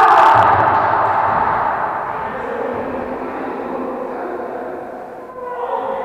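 A raised voice echoing in a large sports hall, loudest at the start and fading away over the next few seconds, between rallies of a volleyball game.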